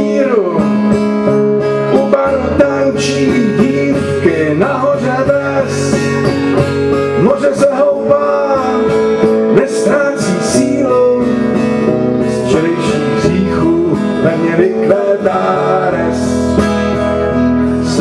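Acoustic guitar strummed steadily in a live folk-country song, with a wavering, gliding melody line above the chords.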